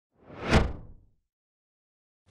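A single whoosh sound effect for an intro logo reveal, swelling to a peak about half a second in and fading away within a second.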